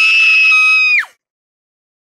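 A loud, high-pitched scream, held steady on one pitch for about a second before dropping away and cutting off.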